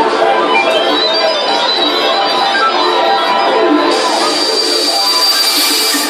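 Loud dance music playing over a club sound system, thin in the bass; a high hiss joins the music about four seconds in.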